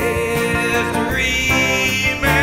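Rock band music: guitars over bass and drums, playing steadily and loud.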